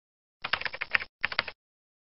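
Typing sound effect: two short bursts of rapid key clicks, the second briefer than the first.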